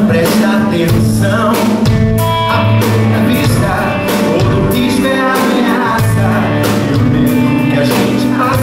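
Live band music: a man singing a Portuguese-language song at a microphone, backed by guitar and a steady percussion beat.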